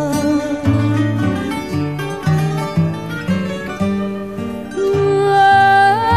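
A woman singing over plucked guitar accompaniment, moving into a long held high note with vibrato near the end.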